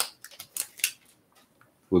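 Foil trading-card pack and the chromium cards inside being handled: a click, then a few short crinkles and clicks in the first second, then quiet.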